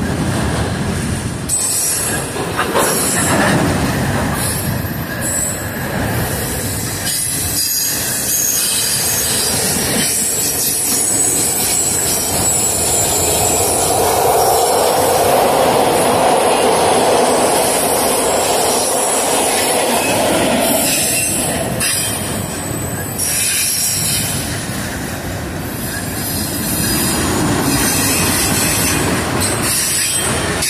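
CSX freight train of autorack cars rolling past on a curve, steel wheels squealing against the rails over the steady rumble and clatter of the cars. It is loudest in the middle and eases briefly near the end.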